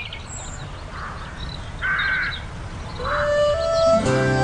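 A few short bird calls, the loudest about two seconds in, over a low steady outdoor rumble. Near the end, music comes in with a melody stepping upward.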